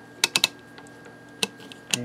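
The rotary switch of a Cornell-Dubilier resistance decade box clicks through its detents as the chicken-head knob is turned back from 1000 ohms toward 700. There is a quick run of clicks, then one more about a second and a half in.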